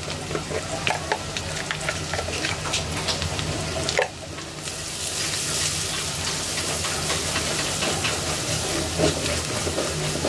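Sliced onions and ground spices sizzling in hot oil in an aluminium pot, with a silicone spatula scraping and stirring against the pot. There is a sharp knock about four seconds in, and after it the sizzling becomes denser and steadier.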